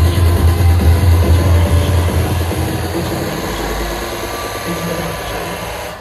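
Loud techno played over a club sound system. A heavy kick and bass pound until about two and a half seconds in, then drop out, leaving a thinner texture that slowly fades as the track breaks down.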